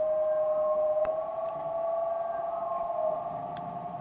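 Live experimental electro-acoustic music: a held cluster of several steady tones that waver and drift slightly upward, with two faint clicks, one about a second in and one near the end.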